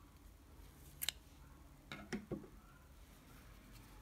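Scissors snipping through acrylic yarn to cut the working thread off the finished piece: two short sharp snips about a second apart, with faint handling of the yarn in between.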